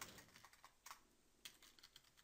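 Faint computer keyboard keystrokes: a few separate key presses typing a word.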